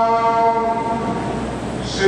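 Sikh kirtan: one long note held at a steady pitch, fading slightly near the end, with a new sung note starting right at the close.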